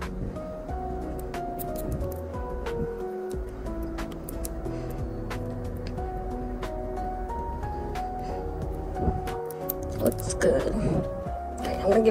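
Background music: a melody of short stepped notes over a light, regular ticking beat. A voice comes in briefly near the end.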